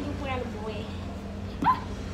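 Brief low talk, then a single short, sharp yelp that rises in pitch about one and a half seconds in, over a steady low hum.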